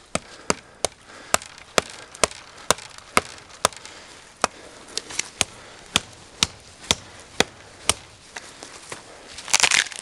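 Fallkniven A2 survival knife chopping into a dead tree trunk: a run of sharp wooden strikes, about two a second, which stop a couple of seconds before the end. Near the end there is a longer, louder crunching noise.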